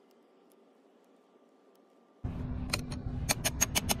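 Silence for about two seconds, then a wrench clicks as it loosens a car battery's negative terminal nut and the clamp comes off the post: about seven sharp metallic clicks in quick succession, over a steady low hum.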